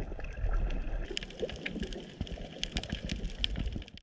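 Underwater sound from a camera submerged on a coral reef: a wash of moving water with many scattered sharp clicks and crackles, and a low rumble in the first second.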